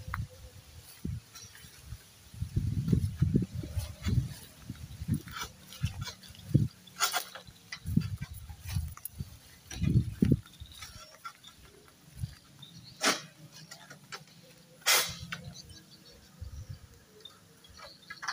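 Oil palm fronds being cut with a long-pole sickle: a few sharp cracks, the loudest about fifteen seconds in, over irregular low thumps.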